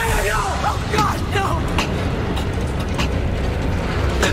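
A woman's high voice in a run of short rising-and-falling sounds over the first second and a half, with a steady low rumble beneath and a few sharp clicks after.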